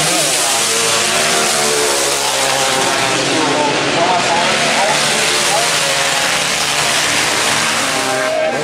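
Grass track racing motorcycles running hard around the oval, a continuous loud drone of engines whose pitch rises and falls as the riders accelerate and back off through the bends.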